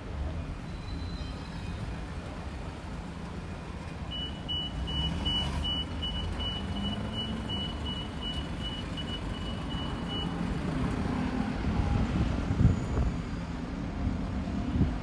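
A vehicle's reversing beeper sounding a run of evenly spaced high beeps for about six seconds, starting about four seconds in, over road traffic rumble that grows louder near the end.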